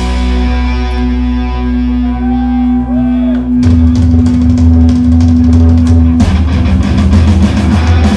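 A hardcore punk band playing live and loud: a distorted guitar chord and bass note ring out held for about three and a half seconds, then the drums and full band come back in under it.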